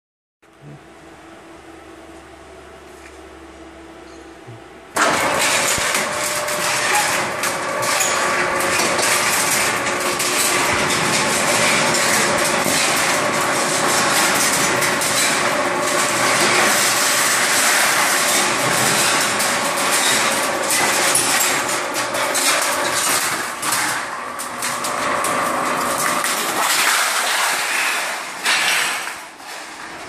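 Sheet-metal slitter cutting galvanized steel coil into narrow strips. A low hum gives way about five seconds in to a loud, steady machine noise with a steady tone through it as the sheet runs through the rotary slitting knives. The noise eases slightly near the end.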